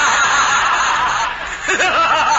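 Studio audience laughing at a joke, many voices overlapping, on an old radio broadcast recording with a dull, narrow top end.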